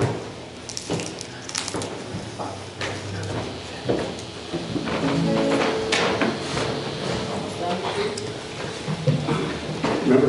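Acoustic and electric guitars playing a few loose notes and chords that ring out, with low talk and some knocks and handling noise in the first few seconds.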